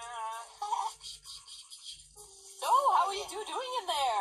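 Rapid toothbrush scrubbing from a cartoon soundtrack, played on a TV, heard briefly after a child's laugh; a woman's voice then takes over for the rest.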